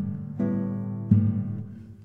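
Solo classical guitar playing sharp plucked chords, one about half a second in and another about a second in, each ringing and fading away.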